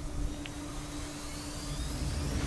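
Wind buffeting the microphone as an uneven low rumble, over a steady low hum; a faint rising whistle begins near the end.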